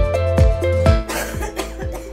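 Background music with a steady beat. About a second in, a woman coughs briefly, hand at her mouth.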